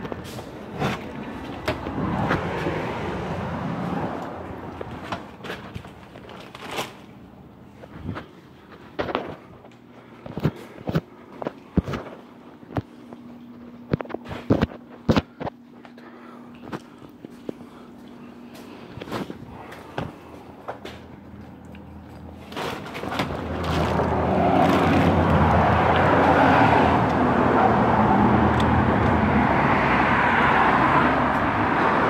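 Sharp clicks and knocks from a handheld phone being moved. About three-quarters of the way in, a motor vehicle's engine running close by gets loud and stays steady.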